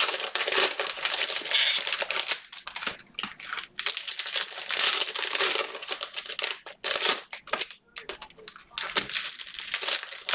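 Cellophane wrappers of Panini Prizm cello card packs crinkling and tearing as the packs are handled and opened by hand, in irregular bursts with a few short pauses.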